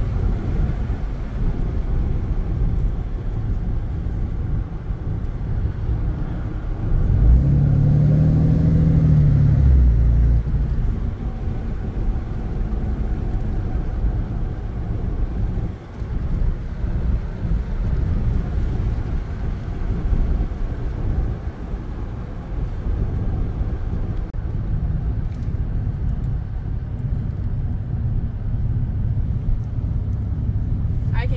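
Dodge Ram's Cummins turbodiesel with a straight-pipe exhaust droning steadily from inside the cab while cruising, over tyre and road noise. About seven seconds in, the engine note swells and rises in pitch for a few seconds, then falls back to the cruising drone.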